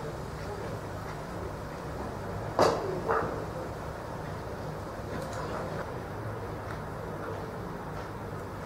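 A cricket ball being struck as it reaches the batsman: one sharp knock about two and a half seconds in. It is followed within half a second by a brief shout, over a steady hum of distant voices.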